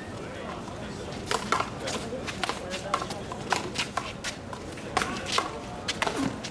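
A one-wall handball rally: a rubber handball repeatedly struck by gloved hands and smacking off the concrete wall and court, about a dozen sharp, irregular smacks starting about a second in.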